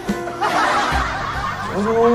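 Guitar music cuts off right at the start, followed by a burst of snickering laughter, and a voice begins near the end.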